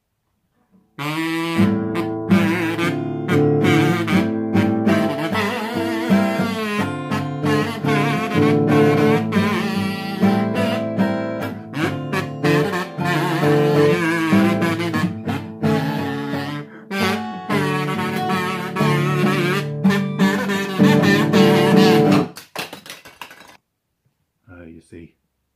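Acoustic guitar strummed with a kazoo buzzing a wavering tune over it, starting about a second in and breaking off near the end.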